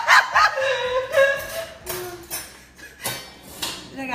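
A woman laughing hard, in several high-pitched bursts with a few drawn-out held notes.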